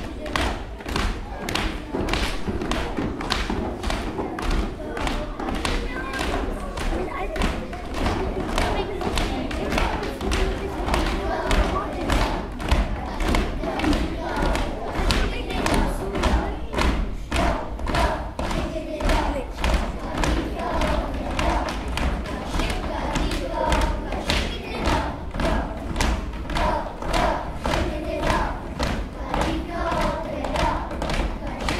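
A group of young children doing body percussion, feet stomping on a wooden stage floor in a steady beat of about two to three a second. Children's voices chant along, more plainly in the second half.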